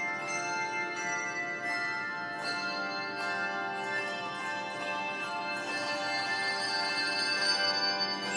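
Handbell choir playing a piece: many bell notes ringing and overlapping, one chord sustaining into the next.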